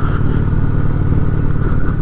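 Honda Shadow ACE 750's V-twin engine running at a steady cruise, its low note holding even.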